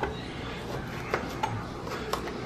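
Kitchen knife slicing wild ramps on a plastic cutting board: a few soft, irregular taps as the blade meets the board.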